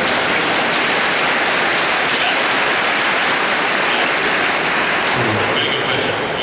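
Large audience applauding, an even clatter that dies down near the end.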